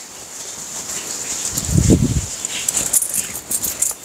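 Crisp rustling and crackling of a folded cotton blouse-fabric piece and its packing being handled and unfolded. A brief low sound about halfway through is the loudest moment.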